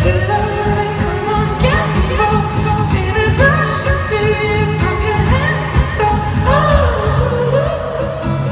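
Male singer performing live with amplified acoustic guitar over a steady low beat, heard loud through an arena PA from within the audience.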